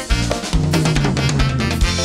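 Live tropical dance band playing an instrumental passage with no singing: drum kit hits under a long, slightly falling low note, with electric guitars, bass and keyboard.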